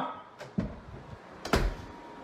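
A few light knocks, then a louder dull thump about one and a half seconds in, picked up by a phone's microphone.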